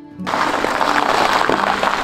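Soft background music, joined about a quarter second in by a loud, steady, hiss-like rushing noise that drowns it out.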